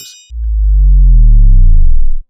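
Loud, deep synthesized bass tone, an outro sound effect, starting about a third of a second in and sliding slowly down in pitch until it cuts off. It is preceded by the last of a short high chime from the subscribe animation.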